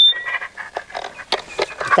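A short high-pitched squeal of feedback from a portable voice amplifier right at the start. It is followed by scattered knocks and rustles of the clip-on microphone being handled.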